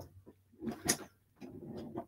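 A quiet room with a few faint, brief handling noises and one short sharp click about a second in.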